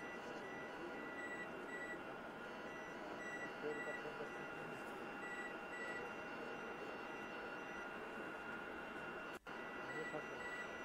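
Steady equipment hum with short, high electronic beeps coming in irregular groups of two or three. The sound cuts out for an instant near the end.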